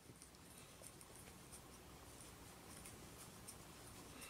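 Near silence, with faint rustling and scratching of cotton twine being worked with a crochet hook as double crochet stitches are made.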